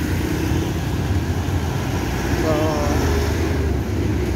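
Steady low rumble of a pet trolley's wheels rolling over rough concrete pavement, with a brief voice about two and a half seconds in.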